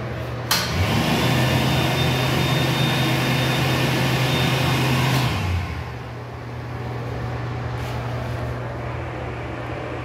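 Wall-mounted automatic hand dryer switching on about half a second in, triggered by a hand under its nozzle, and blowing steadily with a thin whine for about five seconds before cutting off. A quieter steady background hum continues throughout.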